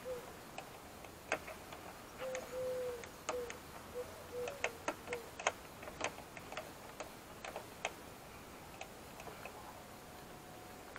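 Rubber door weatherstrip being pulled off its metal flange by hand: a string of small clicks and snaps, with a few short rubbery squeaks a few seconds in. The clicks thin out near the end.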